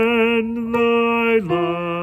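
A man singing long held notes with vibrato; the pitch drops to a lower note about one and a half seconds in.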